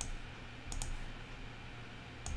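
Faint computer clicks: one at the start and a quick pair a little under a second in.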